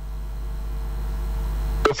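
A steady low hum with faint hiss on the line, slowly growing a little louder, cut off near the end by a man's voice.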